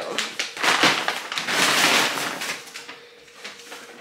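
Brown paper grocery bag rustling and crinkling as groceries are pulled out and handled. It is busiest in the first two seconds and then dies down.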